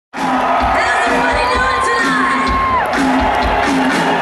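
Live rock band playing, with a steady kick-drum beat about twice a second under repeated low bass notes, and a crowd cheering and whooping over it.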